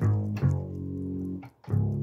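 Synth bass voice on a Yamaha PSR-520 keyboard, played from the lower split section: a short note, a long held note of about a second, then a brief break and a new note near the end.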